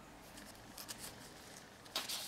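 Faint rustling of a paper picture-book page being handled as a hand takes hold of it to turn it, with a couple of soft brushes about a second in and a sharper crinkle at the end.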